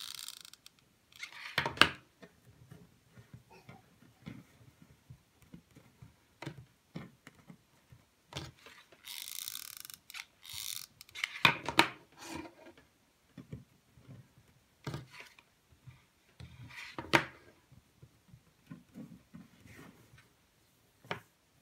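Scattered handling noises from working a twisted rope ring with a hot glue gun on a table: sharp knocks and clicks now and then, three of them louder, and a stretch of rope rustling and rubbing about halfway through.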